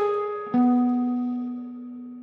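Electric guitar single notes: a held note, the third of an E7 chord after a released bend, fades, then about half a second in a lower note, the fifth of the chord on the A string, is picked and rings on, slowly decaying.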